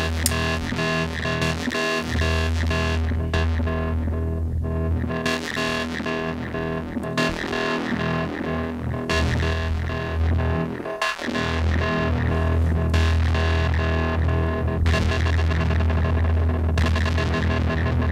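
Electronic techno played live on a modular synthesizer: a sustained deep bass drone under layered synth tones, with no steady beat. The bright top end fades away and comes back a few times as the sound is tweaked, and the bass drops out briefly twice.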